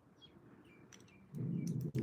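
A dog whining faintly in a few short high squeaks, then a louder low grumble about a second and a half in.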